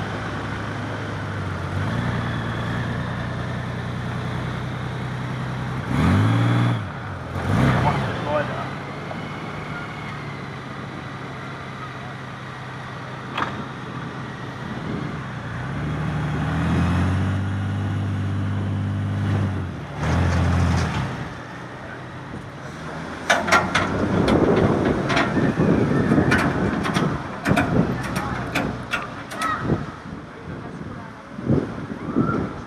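A vehicle engine running, its pitch stepping up for a few seconds and back down twice, with two short louder revs about six and seven seconds in. In the last seconds comes a run of sharp clicks and knocks.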